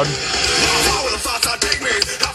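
Hard rock song playing through a car stereo's speakers inside the cabin, with the subwoofer switched off, so there is little deep bass. The volume is moderate, "not too loud".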